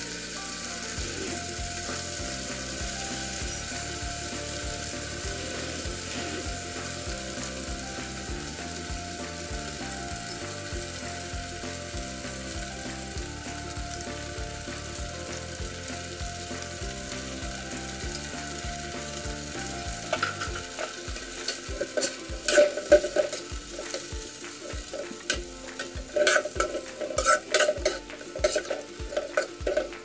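Chicken pieces and carrot strips sizzling in an oiled pan. From about twenty seconds in, a spatula scrapes and knocks against the pan in quick, irregular strokes as the sauce is stirred through.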